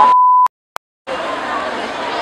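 A loud, steady electronic beep about half a second long, cut off abruptly into a moment of silence broken by a single click. After about a second the background hubbub of the eating place comes back.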